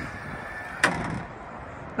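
Power in-floor wheelchair ramp of a BraunAbility XI minivan conversion unfolding, its drive running with a steady faint whine. A single clunk comes a little under a second in as the ramp reaches the pavement, and the whine stops soon after.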